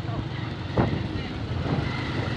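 Motorcycle engine running steadily on the move, with wind rumbling on the microphone.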